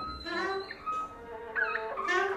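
A free-improvisation ensemble playing, with several instruments or voices sounding at once in short sliding pitches.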